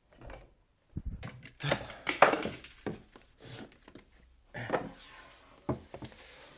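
Clutter being handled on a shelving unit: a plastic ride-on toy car and other items lifted, set down and shifted. After about a second of quiet come irregular knocks and thunks, the loudest a little after two seconds in, with rustling between.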